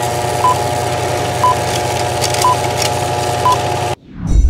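Old-film countdown leader sound effect: four short, high beeps, one a second, over a steady mechanical running noise with faint crackle and clicks, cutting off suddenly near the end.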